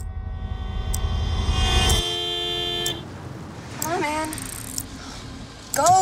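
A car horn sounds one long, steady blast in traffic. It swells in over about a second and stops about three seconds in, over a low rumble that cuts off about two seconds in.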